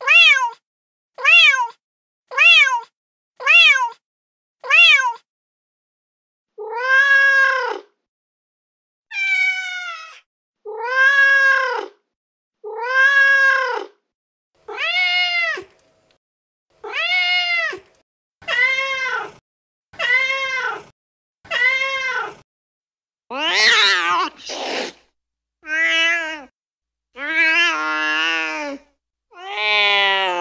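Recorded domestic cat meows played back from a cat-sound app. First come five short meows about a second apart, each rising and falling, then a run of longer, drawn-out meows about two seconds apart. Near the end the calls turn more wavering and uneven.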